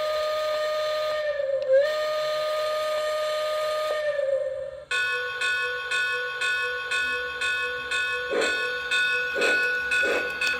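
Lionel LionChief John Deere 0-8-0 model steam locomotive's onboard sound system blowing its steam whistle, one steady tone held for about five seconds with a brief dip about two seconds in. The whistle then gives way to the locomotive's bell ringing about three times a second, with steam chuffing starting near the end as the engine pulls away.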